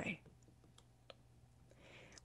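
The tail of a spoken word, then a near-silent pause broken by a few faint, isolated clicks and a soft breath near the end.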